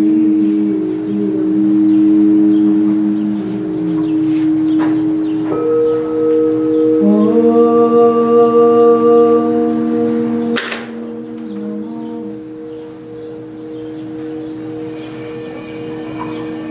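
Singing bowls ringing in long steady tones, layered with a held lower drone note that sounds, stops and comes back. About ten and a half seconds in there is a single sharp click, and after it the sound is quieter.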